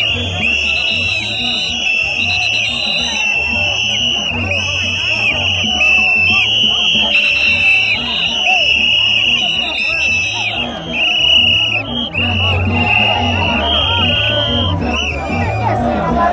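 Live gagá band music: a steady drum beat under short, high horn notes repeated in an even rhythm, with a dense crowd of voices.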